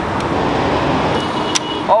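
Road traffic noise from a vehicle passing close by: a steady rush of engine and tyre noise. A sharp click comes about one and a half seconds in.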